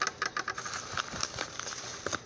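Plastic mailing envelope rustling and crinkling as it is handled, an irregular run of small crackles and clicks.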